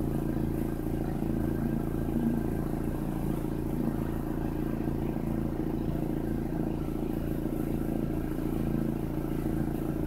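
A steady low machine hum made of several held low tones, unchanging throughout.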